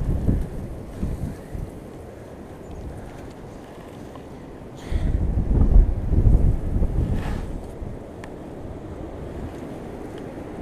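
Wind buffeting the microphone, a low rumble that swells in gusts just after the start and again from about five seconds in to about seven and a half.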